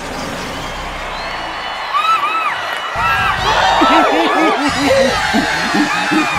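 A steady noisy hiss at first, then from about two seconds in, cartoon creatures' nonsense voices cheering and whooping in many short rising-and-falling calls, over music.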